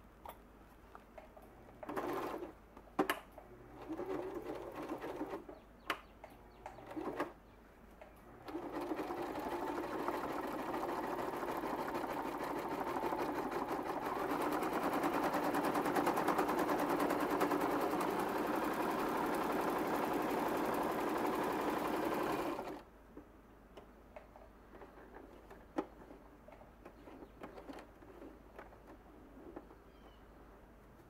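Electric domestic sewing machine stitching through folded waxed canvas: a few short bursts of stitching in the first seven seconds, then a steady run of about fourteen seconds that cuts off suddenly. A few light clicks follow.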